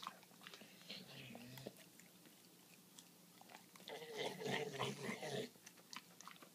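Golden retriever biting and chewing hand-fed banana pieces, with soft mouth clicks and smacks. A soft voice sounds for about a second and a half around four seconds in.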